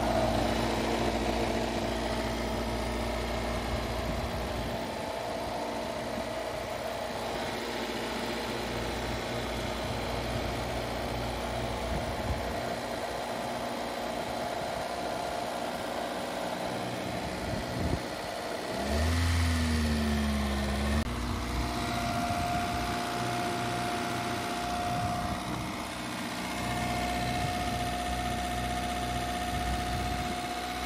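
A 1989 Mazda 323's four-cylinder engine idling steadily on its first run with a freshly fitted timing belt, the timing covers still off. About two-thirds of the way in it gives a short, louder blip that rises and falls in pitch. After that a thin steady whine runs along with the idle.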